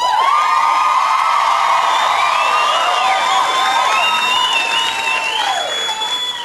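Studio audience cheering and screaming loudly with applause. It rises abruptly at the start and eases near the end.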